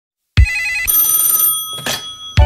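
A telephone ringing: one rapidly warbling ring that starts about a third of a second in and fades away, with a short sound just before the end.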